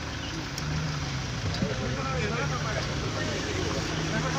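A vehicle engine idling with a steady low hum, with faint voices in the background.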